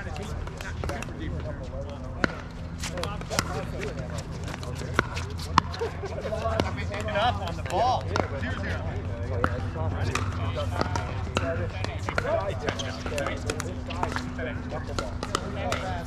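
Sharp, irregular pocks of paddles hitting plastic pickleballs on several surrounding courts, overlapping one another, over distant chatter of players and a steady low hum.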